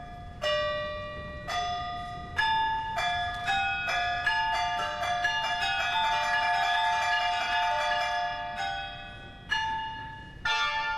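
Yunluo, a frame of small tuned Chinese gongs, struck with mallets: single ringing notes about a second apart that quicken into a fast run of overlapping notes in the middle, then slow to single strokes again near the end.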